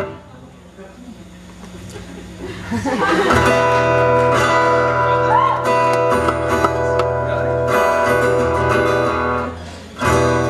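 Acoustic guitar through a theatre PA: playing cuts off at the start, then about three seconds in a chord is strummed and left ringing, fading near the end, as a check of the acoustic guitar's level in the monitor mix.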